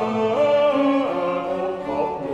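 A male solo singer sings a sustained line of a Baroque oratorio, sliding smoothly between held notes, over a string orchestra accompaniment.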